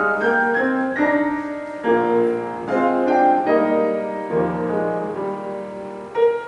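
Piano postlude closing a church service: a flowing run of notes and chords at a moderate tempo.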